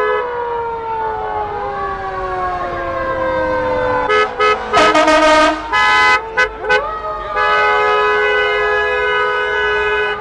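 Vehicle horns honking: several short toots in the middle, then a long steady blast near the end, over a fire engine's siren winding slowly down and up in pitch.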